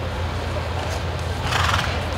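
A horse whinnies briefly about one and a half seconds in, over a steady low hum.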